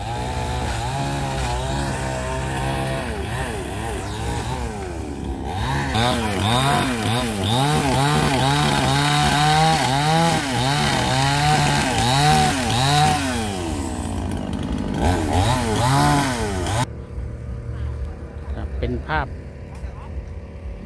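Small two-stroke chainsaw cutting bamboo poles: it runs steadily at first, then revs up and down again and again through the cuts, and cuts off suddenly near the end.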